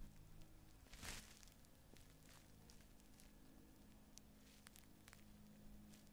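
Near silence, with a faint low hum throughout, one brief rustle about a second in and a few faint ticks toward the end.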